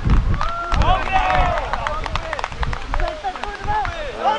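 Players shouting and calling to each other across a grass football pitch, with scattered sharp clicks and a low rumble under the voices.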